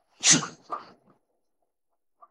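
A man's single short, breathy spoken reply, "是" ("yes"), with a fainter second sound just after it.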